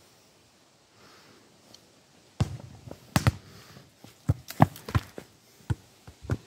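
A quick run of irregular thumps and knocks close to the phone's microphone, starting a couple of seconds in, as the phone is carried and swung around while filming.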